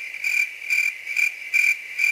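Crickets chirping as a stock sound effect: a steady high trill that pulses about twice a second, the comic 'crickets' of an empty, silent scene.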